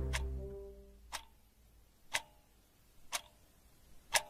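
Music dying away over the first second, then a clock ticking slowly and sharply, one tick each second, four ticks in all.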